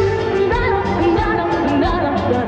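A female lead singer singing live with a Tejano band. She holds a note, then moves into a melodic line about half a second in, over a steady beat.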